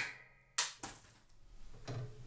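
Pendulum impact tester with a half-kilogram hammer: a click with a short fading ring as the hammer swings free, then about half a second in a sharp crack as it strikes the 3D-printed PLA test bar, a second knock just after, and a softer knock near the end as the hammer is handled back up. The PLA bar is brittle and snaps under the blow.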